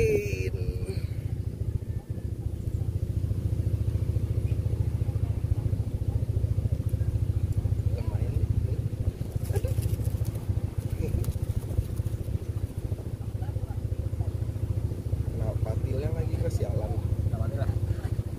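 A steady, low engine-like hum that does not change, with faint voices now and then.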